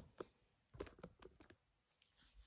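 Faint light taps and clicks as the recording phone is handled and straightened, a handful of them in the first second and a half.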